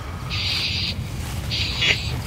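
Ghost-box 'portal' speaker putting out two short bursts of filtered static, each about half a second long, over a steady low hum.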